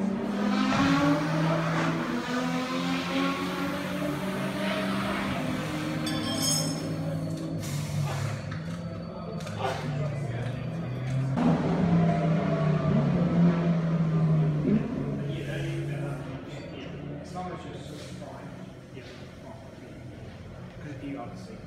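Racing car engines running, their pitch holding and shifting over several seconds, with indistinct voices in the garage.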